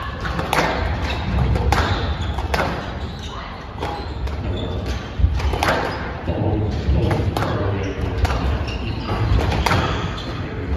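Squash rally: the ball struck by rackets and smacking off the court walls, sharp knocks about once a second, echoing in a large hall.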